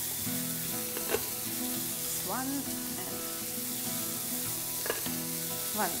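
Chicken cubes and chopped onions sizzling steadily in olive oil in a deep pan.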